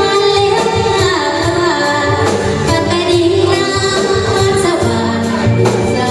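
A woman singing a Lao song live into a microphone, backed by a band of electric guitars and drums keeping a steady beat.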